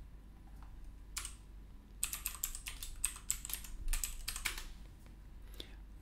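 Computer keyboard keys being typed: a single keystroke about a second in, then a quick run of keystrokes, and one more near the end, as a password is entered at a sudo prompt.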